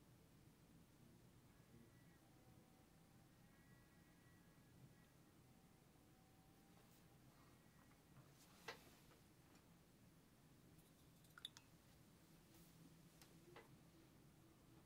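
Near silence: room tone, with faint computer-mouse clicks about nine seconds in and again about eleven and a half seconds in.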